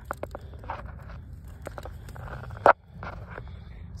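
Scattered small clicks and soft rustling of movement in dry grass and twigs, with one sharper click about two-thirds of the way in, over a low steady rumble.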